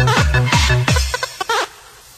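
Electronic dance music from a club DJ session, with a fast, pounding kick-drum beat and synth stabs. About a second in the beat drops out, and the music fades to a quiet break near the end.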